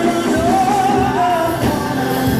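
Live gospel worship music: a singer holds a wavering note over sustained chords and a steady drumbeat.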